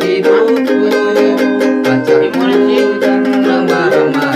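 Ukulele strummed in a steady rhythm, playing the chords of a pop song and changing chords twice.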